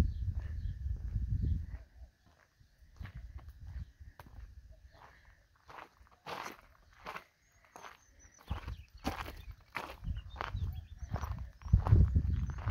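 Footsteps on gravel and dry dirt, a walker's steady steps at an uneven pace, with a low rumble on the microphone at the start and again near the end.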